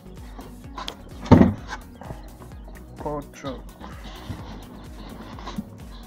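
A man's voice counting aloud: one loud spoken word about a second in and a shorter one near the middle, over steady background music.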